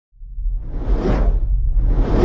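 Cinematic intro sound effects: a deep rumble fades in and a whoosh swells to a peak about a second in, with a second whoosh building near the end.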